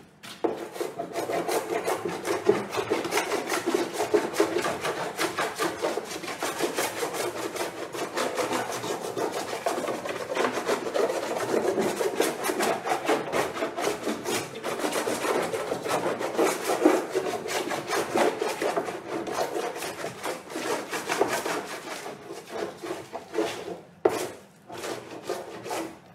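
A painted panel being abraded by hand, sanding or scraping the paint with quick back-and-forth rubbing strokes. It runs in a steady scrubbing rhythm, then breaks into separate strokes with short gaps near the end before stopping.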